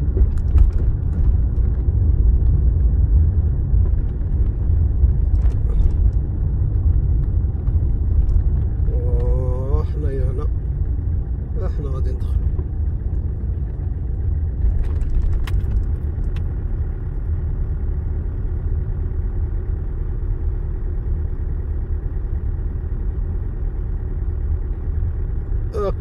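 Steady low rumble of a car driving, its engine and tyre noise heard from inside the cabin. A faint voice is heard briefly about ten seconds in.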